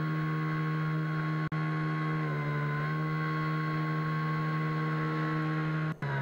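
An outdoor airship's thrust motors heard through its onboard camera: a steady hum made of several pitched tones, dipping slightly in pitch for under a second about two seconds in as motor speed changes. A single sharp click about a second and a half in.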